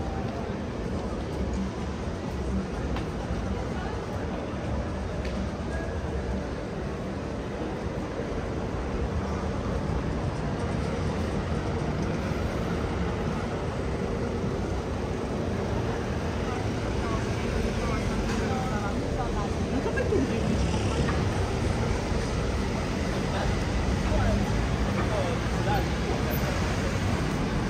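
Busy city-street ambience: steady road traffic with cars passing, and passers-by talking in the background. The traffic grows a little louder in the second half.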